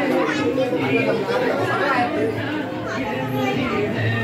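Many people talking over one another in a room: the overlapping chatter of a crowded party.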